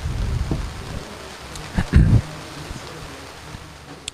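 A few low thumps and rumbles over a steady hiss, the loudest a quick pair of thuds about two seconds in.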